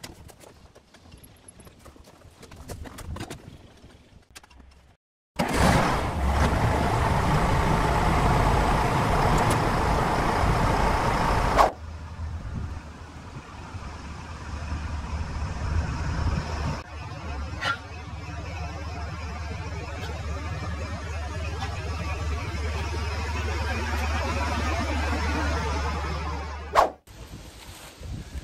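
M1078 LMTV military truck driving at about 40 mph: first a loud stretch of engine and road noise, then a steady low diesel drone that grows louder as the truck approaches along the road. A few faint clicks come before the driving begins.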